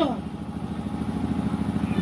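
A small engine running steadily at low revs, with an even, rapid pulse, heard under the pause in an amplified outdoor speech.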